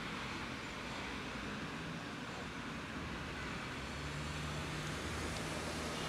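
Steady road traffic noise: a low engine hum under an even hiss, with no meowing.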